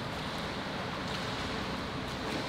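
Steady ambience of an indoor swimming pool: an even wash of noise from the water and the hall, with no distinct events.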